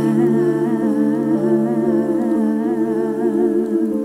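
Music: several voices humming long, wavering notes in close harmony without words, over a held low tone.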